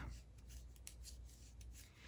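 Near silence with faint rubbing and a few soft ticks: yarn and wooden knitting needles being handled.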